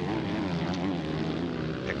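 Motocross bike engines running on the track, a steady drone whose pitch wavers slightly as the riders work the throttle.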